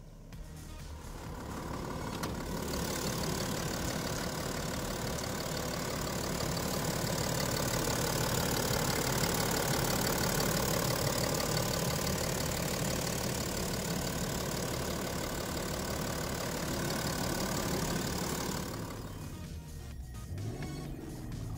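BMW 630d's 3-litre straight-six turbo diesel idling steadily, fading in over the first two seconds and out near the end, with background music mixed in.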